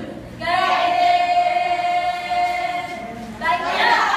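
A group of young women singing together unaccompanied, holding one long note for nearly three seconds, then starting a new phrase near the end.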